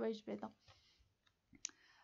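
A single short, sharp computer mouse click about a second and a half in, after a voice trails off into quiet.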